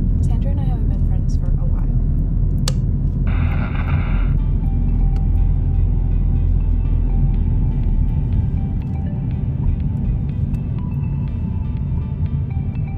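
Steady low rumble of road and engine noise inside a moving Honda car's cabin, with a brief hiss about three seconds in. Quiet music comes in about five seconds in and runs under the rumble.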